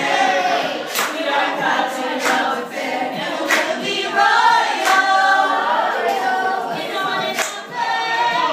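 A group of women singing together without instruments, several voices at once. Sharp percussive hits cut through the singing every second or two.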